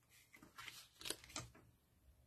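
Faint rustles of paper under hands as a glued patterned paper panel is pressed and smoothed down onto a card, a few soft brushes around the middle.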